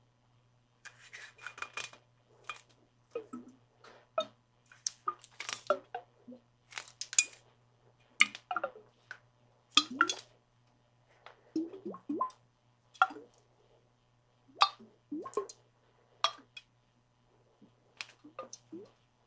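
Water sloshing and glugging inside a clear skull-shaped container as it is handled and tipped, in short irregular splashes and gulps with light clinks against its wall.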